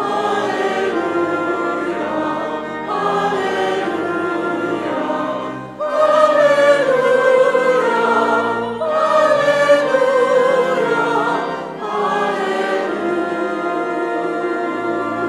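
Church choir singing a hymn in phrases of about three seconds, each with a brief break for breath between.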